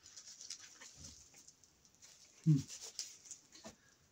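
A cardboard knife box being opened and handled: scratchy rustling and scraping of paperboard. A little past halfway there is a brief low hum-like sound that falls in pitch, followed by a few light clicks.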